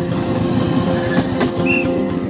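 Small engine of a rail motor trolley running steadily as it passes close by on the track, with two sharp clicks just after a second in.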